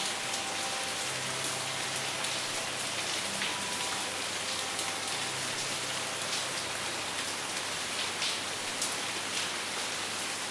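Steady rain falling on a surface: a constant hiss with scattered drop ticks, a few louder ones near the end. Faint, low sustained notes of sitar music sit underneath.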